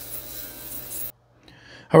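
Ultrasonic cleaner running with a tank of soapy water: a steady hiss over a low hum. It cuts off suddenly about a second in.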